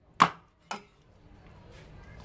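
Cleaver chopping a pork trotter on a wooden chopping board: two sharp knocks about half a second apart, the first much louder.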